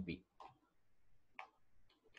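A few faint, scattered computer keyboard keystrokes, the clearest about half a second and a second and a half in.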